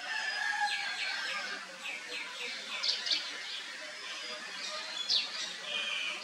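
Birds chirping in the background: runs of short, quick chirps that fall in pitch, loudest around the middle and near the end.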